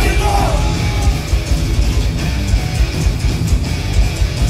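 Thrash metal band playing live: distorted electric guitars, bass and drums, with a shouted vocal at the start.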